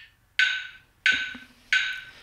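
Metronome ticking steadily with wood-block-style clicks, about 0.7 s apart (roughly 85 beats a minute), each click short and fading quickly.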